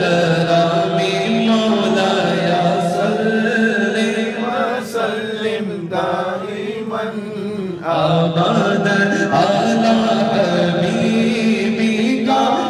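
Men's voices chanting a naat, an unaccompanied devotional poem, into a microphone, with long held low notes under the melody. The sound thins out for a few seconds in the middle, then comes back in full.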